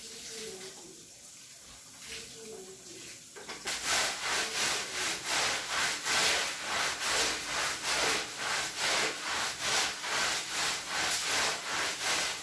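Long-handled scrub brush scrubbing a wet, soapy shag rug on a tile floor: after a quieter start, rhythmic back-and-forth strokes begin about four seconds in, about two or three a second.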